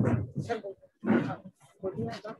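Voices over a video call in short bursts: brief untranscribed spoken exchanges, a few syllables at a time.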